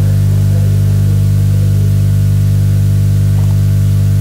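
Loud, steady low electrical hum with a stack of evenly spaced overtones, typical of mains hum in the recording.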